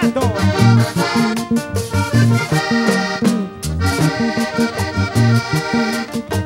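Vallenato band playing an instrumental passage: a diatonic button accordion carries the melody over a stepping bass line and steady percussion strokes.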